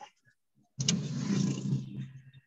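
About a second in, a burst of engine-like running noise with a low steady hum cuts in suddenly, transmitted over a video call, and fades out after about a second and a half.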